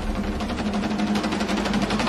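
A fast, continuous drum roll over a steady low drone, part of devotional background music.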